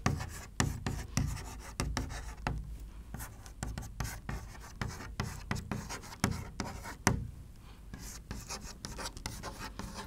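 Chalk writing on a chalkboard: a quick, uneven run of taps and scratchy strokes as words are written, with one sharper tap about seven seconds in.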